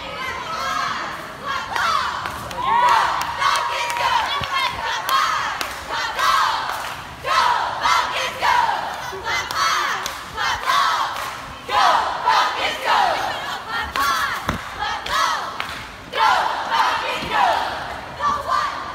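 Cheerleading squad shouting a cheer together, a string of short loud rhythmic calls.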